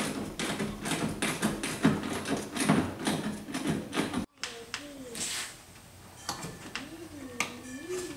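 Quick metal clicks and taps of a small wrench working a bolt inside a truck door, stopping abruptly about four seconds in. The rest is quieter, with a faint muffled voice.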